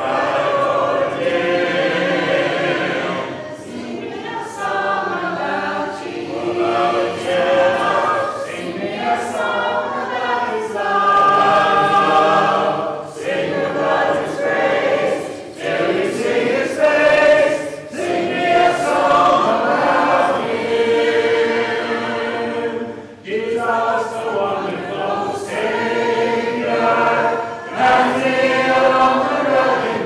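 A church congregation singing a hymn a cappella, many voices together with no instruments, pausing briefly between phrases.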